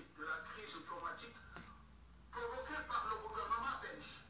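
A man speaking on a television news broadcast, his voice heard through the TV's speaker in a small room, with a short pause about halfway through.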